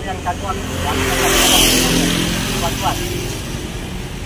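A motor vehicle passing close by, its engine and road noise swelling to a peak about a second and a half in, then fading away.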